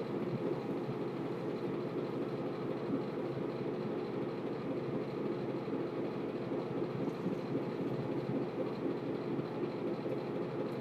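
Steady low rumbling background noise that stays even throughout, with no distinct events.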